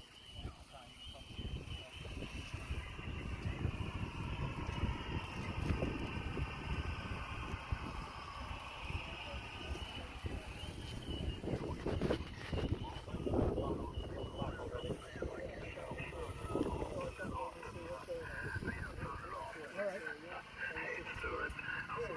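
Wind buffeting the microphone, over a distant voice coming from an HF transceiver's speaker: a single-sideband voice that sounds thin and narrow, cut off above and below the normal range of speech.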